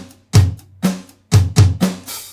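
EZdrummer 3 virtual acoustic drum kit playing back a groove, with its kick drum swapped for a very tight sampled kick. Kick and snare hits alternate in a steady beat, each hit bright with cymbal shimmer.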